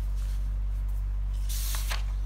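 Paper handled on a desk: a short swish of a sheet sliding under a hand about one and a half seconds in, over a steady low hum.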